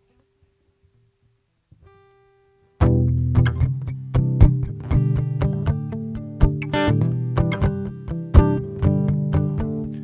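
Acoustic guitar: a faint held note, then rhythmic strummed chords start abruptly about three seconds in and carry on as the song's instrumental intro.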